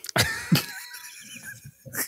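A man laughing: two short bursts at the start, then a high, wheezing laugh that trails off.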